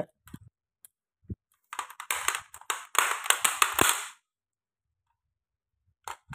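A few separate clicks, then about two seconds of dense clattering and crackling as a rice cooker's power cord and plug are handled and pushed into a wall socket.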